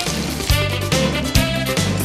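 Instrumental music with a steady beat and held low notes.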